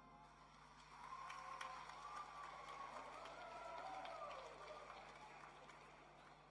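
Faint audience applause with a cheer over it, rising about a second in and dying away near the end.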